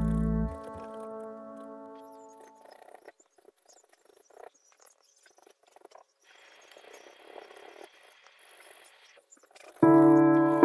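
Piano background music rings out and dies away in the first couple of seconds. It leaves faint, scattered scratching of a paintbrush on canvas, and the piano music comes back in just before the end.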